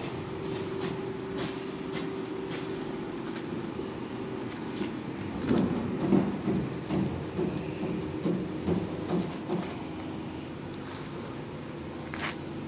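A steady low machine hum made of several tones, with a stretch of louder, irregular low sounds about halfway through.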